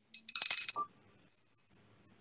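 Small handbell rung briefly, a few quick high-pitched strikes in well under a second, then a faint ringing tone that fades out.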